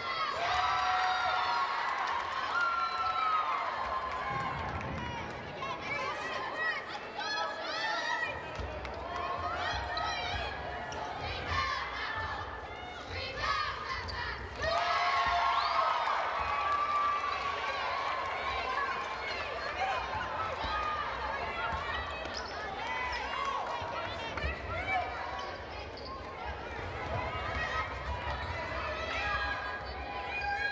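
Basketball game heard in a gymnasium: a ball bouncing on the hardwood court amid players' and spectators' voices calling out, with no commentary.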